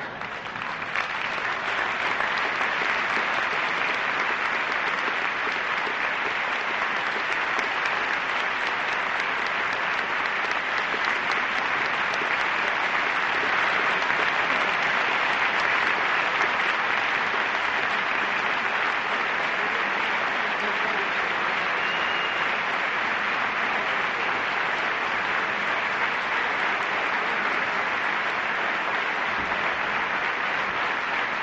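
A large audience laughing briefly, then applauding steadily and without a break. The clapping swells up within the first couple of seconds.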